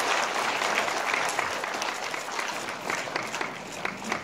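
Audience applauding, the clapping gradually thinning and dying down toward the end.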